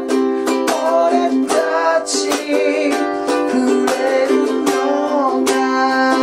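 G-Labo ukulele strummed in a 16-beat rhythm with short muted 'cha' chops, accompanying a man's singing voice. The chords move from F and C to G7 and Csus4, resolving to C.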